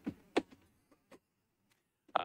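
A brief burst of a person's voice about a third of a second in, followed by two faint clicks and then quiet room tone in a council chamber.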